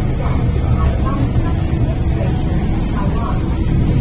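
Running noise of an MTR Island Line M-Train (Metro-Cammell electric multiple unit) in motion, heard inside the carriage: a loud, steady low rumble.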